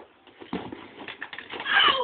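Excited human voices, shouting and laughing, growing louder. Under them are scuffing knocks as someone runs at a large inflatable exercise ball and tumbles over it on grass.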